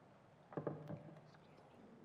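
Quiet room with a brief, low murmured voice about half a second in, then quiet again.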